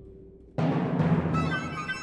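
Orchestra playing a quiet held low note, then a sudden loud full-orchestra chord with timpani about half a second in, held and slowly fading.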